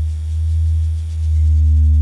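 Deep, steady low drone from the film's soundtrack, swelling a little in loudness toward the end, with a fainter steady tone above it.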